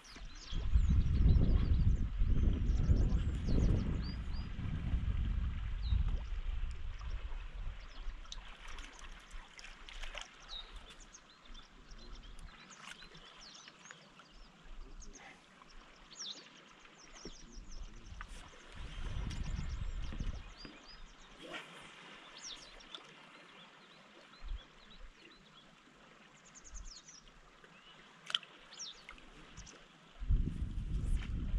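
Small birds chirping on and off over a steady, faint rush of flowing river water. A low rumble, like wind on the microphone, is loudest in the first few seconds and comes back briefly about two-thirds of the way through.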